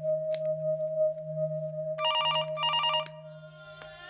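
Desk telephone ringing with an electronic warbling trill, two short rings about two seconds in, over a steady low drone of background music.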